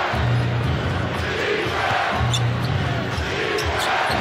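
Arena crowd noise with PA music under it: a low bass note repeats about every two seconds. A basketball is being dribbled on the hardwood court.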